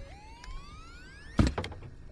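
A mechanical whine that climbs smoothly in pitch for about a second and a half, broken off by a sharp knock and a few lighter clicks.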